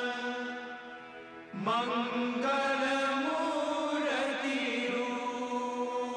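Devotional Hindi chant music with long held notes over a steady drone; it drops briefly about a second in and then swells back.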